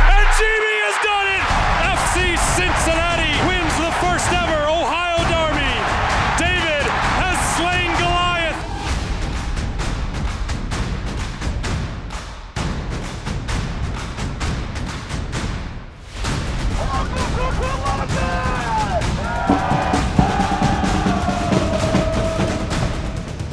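Edited soundtrack of music mixed with a crowd of football supporters singing and chanting, over repeated drum hits. A deep bass boom dies away in the first second.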